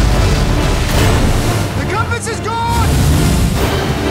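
Trailer sound mix of a storm at sea: a deep boom as it opens over heavy low rumble, crashing-sea noise and dramatic music, with a short voice-like cry about two seconds in.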